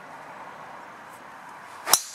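A driver swung hard and striking a golf ball off the tee: a short swish of the club rising into one sharp crack of impact near the end, by far the loudest sound. Before it there is only a faint steady outdoor background.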